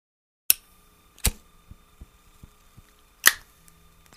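Three loud, sharp clicks spread over a few seconds, with several fainter ticks between them.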